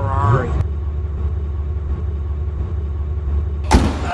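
A sports car's engine idling with a steady low rumble, a man's voice briefly at the start, and a sudden loud thump near the end.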